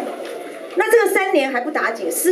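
Speech only: a woman talking into a handheld microphone. Her voice is low and soft for the first half second or so, then louder.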